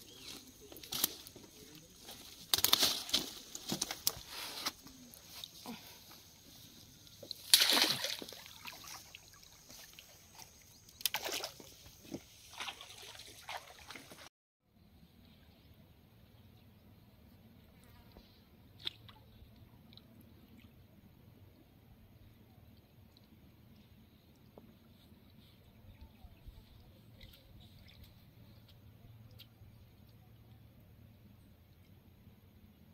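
A landed rohu being handled in a nylon net on gravel: rustling and scraping with several loud bursts as the fish thrashes. After a cut about halfway through, only faint steady riverside ambience with a few small ticks.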